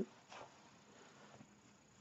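Near silence: room tone, with one faint, brief rustle about a third of a second in from hands shifting a heavy chunky-knit wool cardigan.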